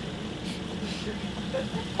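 Car engine idling with a low, steady hum, heard from inside the cabin.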